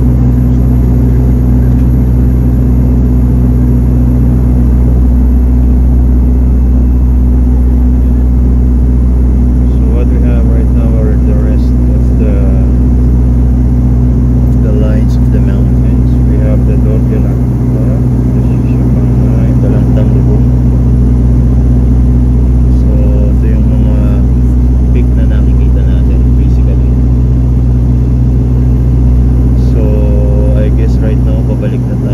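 Steady, loud drone of a turboprop airliner's engines and propellers heard inside the cabin. Faint voices of other passengers sit under it from about ten seconds in.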